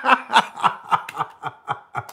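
A man laughing into a close microphone: a run of short breathy chuckles, about four a second, trailing off.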